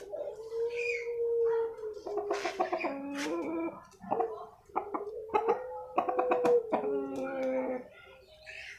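An ayam bangkok (Bangkok gamecock) rooster crowing twice, two long, hoarse crows each about three seconds long, the second starting about four and a half seconds in.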